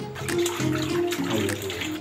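Water splashing and sloshing in a steel bowl as sardines are rubbed and rinsed by hand, with background music playing over it.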